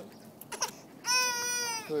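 A young child's high-pitched whining vocal sound, held steady for about a second, beginning about a second in after a near-quiet pause.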